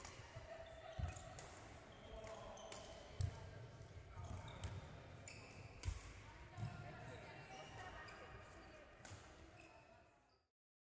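Faint badminton play: scattered sharp racket-on-shuttlecock hits and thudding footsteps on the court floor, with the loudest thuds coming four times. Short shoe squeaks and distant voices sound through the hall's echo.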